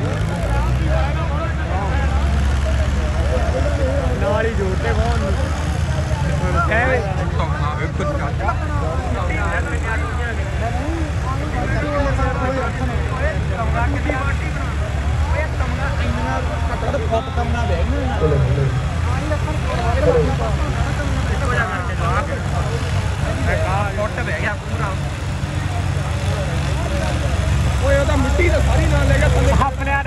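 Tractor diesel engines running with a steady deep rumble, with many voices of a crowd over it.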